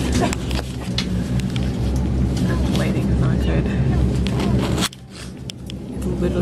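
Steady low drone inside the cabin of a small turboprop airliner, with voices over it; the drone drops out abruptly about five seconds in.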